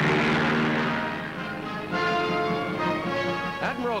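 Propeller aircraft engine noise of a plane taking off from a carrier deck, mixed with orchestral music; the engine noise fades after about a second and a half, leaving the music's sustained notes.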